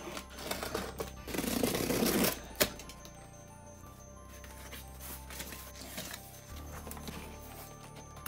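A cardboard parcel being opened: packing tape ripped off with a rasping tear from about half a second to two seconds in, a sharp knock just after, then lighter cardboard rustles and taps as the flaps are handled. Quiet background music runs underneath.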